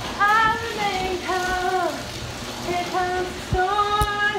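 A woman singing slow, held notes of a worship song, with no words made out.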